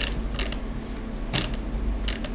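A few short, sharp mechanical clicks and creaks, spaced irregularly over a steady low hum.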